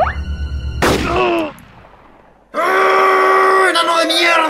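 Cartoon sound effects: a sudden sharp gunshot-like crack about a second in cuts off the background music and trails away. After a short lull, a loud, long drawn-out cry from a man's voice begins and carries on to the end.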